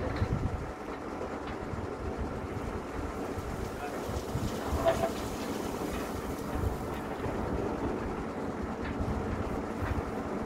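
Truck-mounted borewell drilling rig running steadily with a low mechanical drone while its hoist raises a length of drill pipe.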